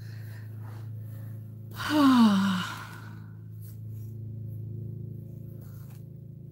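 A woman's voiced sigh, breathy and falling in pitch, about two seconds in. A steady low hum runs underneath.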